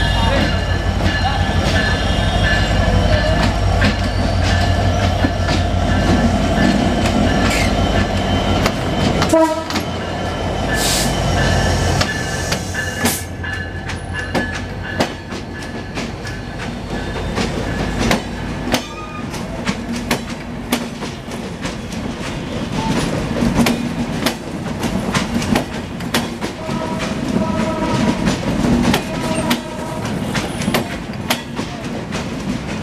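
Diesel-electric locomotive of a passenger train passing close by: a heavy low engine drone with the horn sounding for the first nine seconds. Then the coaches roll past with a rapid clatter of wheels over rail joints.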